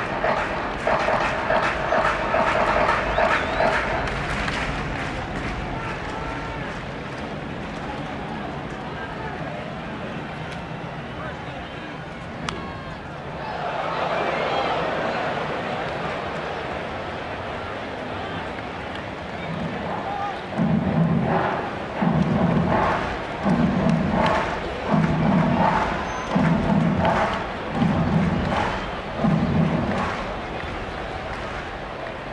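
Ballpark crowd murmur with stadium music. Sustained chords fill the first few seconds, and near the end a rhythmic pattern of low notes repeats about every second and a half.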